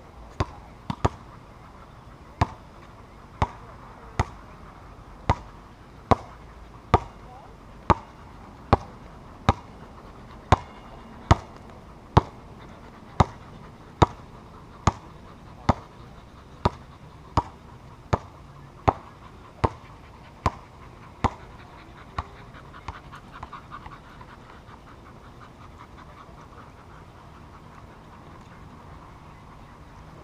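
Basketball dribbled on a hard court surface: sharp bounces a little under a second apart for about twenty seconds, then a few smaller, quicker bounces as the ball settles.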